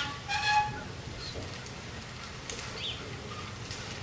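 Seed-metering mechanism of a draft-animal seeder being turned slowly by hand, giving a few faint, sparse clicks and a short faint squeak over quiet background. A brief voice-like sound comes about a third of a second in.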